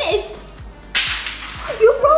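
A sudden whoosh about a second in, fading away over about half a second, over faint background music.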